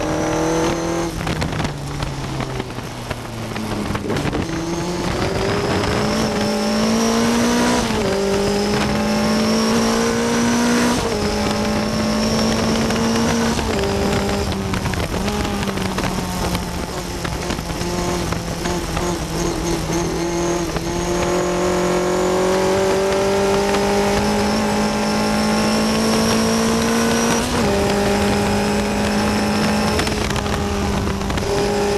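1960 Cooper T53 Lowline single-seater's engine heard on board under hard acceleration. Its pitch climbs through the gears, with upshifts about eight and eleven seconds in and again near the end, and a long rising pull in the second half.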